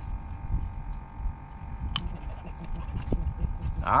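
Low, uneven rumble of wind on the microphone, under a faint steady hum, with a sharp click about two seconds in.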